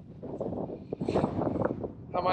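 Wind buffeting the handheld camera's microphone in uneven gusts.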